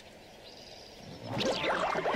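Cartoon soundtrack: quiet for the first half, then sounds with many quickly sliding pitches come in about halfway through.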